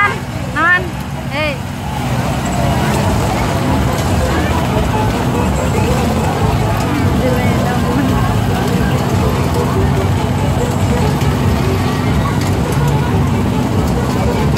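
Crowd chatter with a steady low hum underneath, a few short high chirps sounding in the first second and a half.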